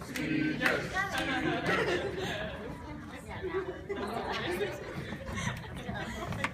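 Indistinct chatter of several overlapping voices echoing in a large hall, with a few short sharp clicks.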